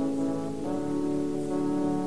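Orchestral film score playing sustained brass chords, moving to a new chord about two-thirds of a second in.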